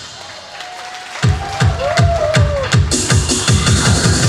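Electronic dance-style backing music with a heavy kick drum beat cuts out at the start, leaving a quieter gap of about a second. The beat then comes back in, and the full track returns near three seconds in, as one song gives way to the next.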